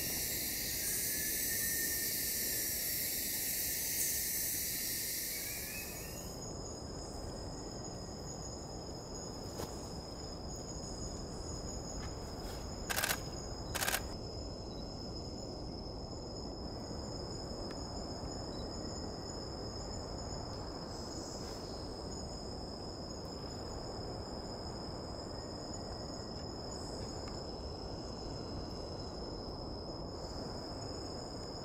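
Tropical forest insect chorus at night: a dense high buzz that drops away about six seconds in, leaving steady high-pitched trilling. Two brief sharp sounds come about thirteen and fourteen seconds in.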